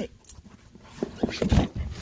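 Siberian husky pawing and nosing at a cardboard box: quiet for about a second, then a few short thumps and scuffs, the loudest about one and a half seconds in.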